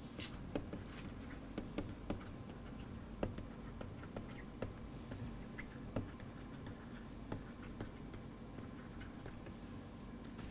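A stylus writing on a tablet screen: faint, irregular taps and scratches as words are handwritten, over a steady low background hum.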